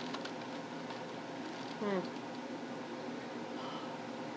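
Steady low room hum with a few faint clicks right at the start, and a short 'hmm' from a woman about two seconds in.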